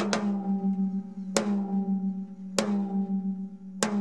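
8-inch acrylic tom-tom struck with a drumstick four times, about every 1.2 seconds. Each hit leaves a long, steady ringing note that runs on into the next. With batter and resonant heads tuned to equal tension, the drum rings with an exaggerated resonance.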